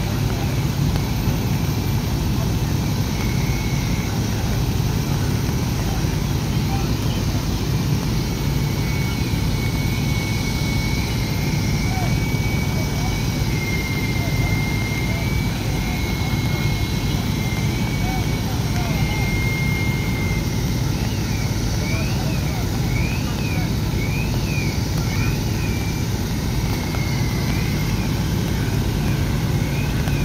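Fire apparatus diesel engines running steadily, a constant low rumble. A faint high tone rises and falls repeatedly over it in the second half.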